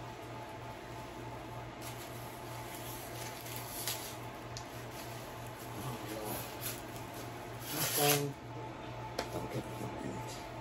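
Light crinkling and clicking of a clear plastic wrapper being handled, over a steady low electrical hum, with a louder rustle and a brief vocal sound about eight seconds in.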